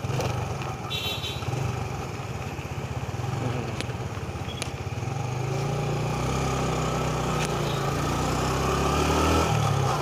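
Motorcycle engine running as the bike turns around and pulls away. Its note rises and grows steadily louder from about halfway through as it speeds up.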